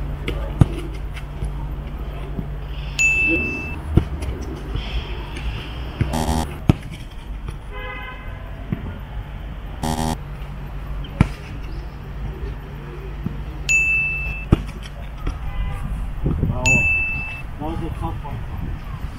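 A football kicked on a grass pitch, several sharp thuds spread through the stretch. A bright ding sound effect rings three times to mark successful passes, and two short edited transition noises come at around six and ten seconds.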